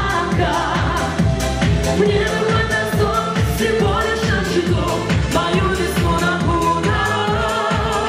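A man and a woman singing a pop song as a duet into microphones, over amplified backing music with a steady beat.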